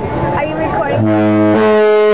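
A Disney cruise ship's musical horn playing a tune of held brass-like notes that change pitch about every half second, starting about a second in. Voices are heard in the first second.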